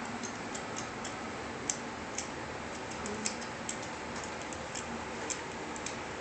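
Light, irregular plastic clicks and taps from toy tools of a Black & Decker children's workbench being handled, over a steady background hiss.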